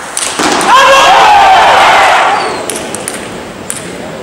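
A couple of sharp table tennis ball clicks, then a loud shout over crowd cheering in a large hall that swells about half a second in, holds for about two seconds and fades away.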